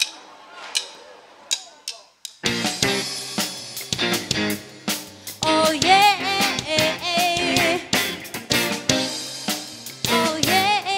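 A few separate sharp taps, then about two and a half seconds in a rock band starts playing at once: drum kit, bass guitar and electric guitars. From about halfway a wavering, high melody line rises above the band.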